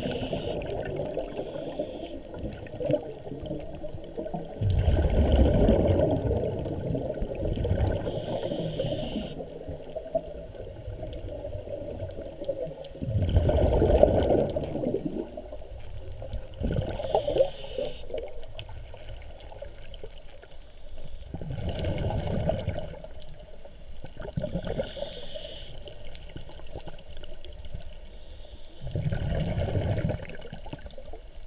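Sea water sloshing around an underwater camera held just below the surface, with a louder surge every three to five seconds.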